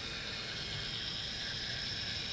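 Small 110-volt gear motor running steadily, turning the rotating assembly fed through a homemade carbon-brush slip ring. It makes an even hiss with a faint high whine.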